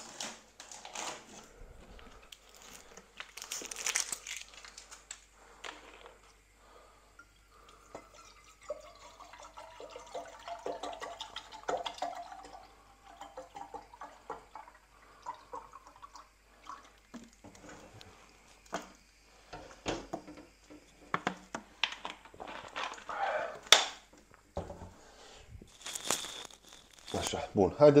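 Water glugging out of a plastic bottle as it is poured into a pot on the stove, through a long stretch in the middle. Around it comes the crinkling and knocking of the plastic bottle being handled.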